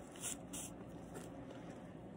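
Faint rustling and a few soft ticks as hands handle fly-tying materials, pulling synthetic fibres free to tie onto the streamer.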